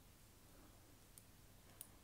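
Near silence, with two faint clicks of metal knitting needles touching as stitches are shifted between them, one about a second in and one near the end.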